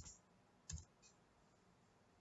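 A few faint clicks from a computer keyboard and mouse as a line of text is copied and pasted: one right at the start, a second about two-thirds of a second in, and a softer one just after. Otherwise near silence.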